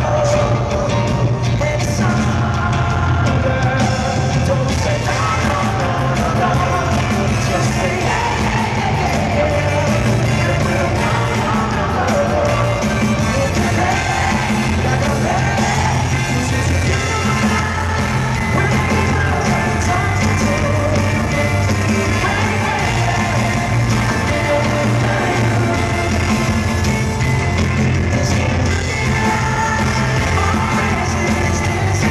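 A live band playing loud, uptempo pop-soul with electric guitars, bass, drums and a horn section of trumpet, trombone and saxophone, under a lead voice singing with backing vocals. It is recorded from the audience in an arena, so the sound is reverberant.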